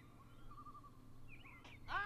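Faint anime soundtrack: quiet warbling calls in the background, then near the end a character's high-pitched voice starts calling out.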